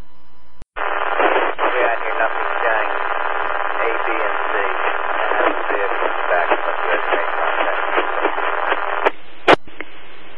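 Scanner radio traffic: a two-way radio voice transmission of about eight seconds, thin and band-limited with hiss under it, that the speech recogniser could not make out. Static hiss frames it, with a short dropout just before it starts and sharp squelch clicks near the end.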